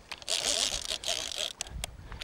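Spinning reel and line working against a freshly hooked fish on a sharply bent rod: a raspy hiss in a few short stretches, with some clicks near the end.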